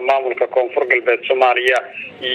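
Speech only: a voice talking continuously, with a narrow, radio-like sound.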